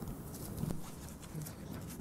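Scattered light knocks and clicks over faint, steady room tone.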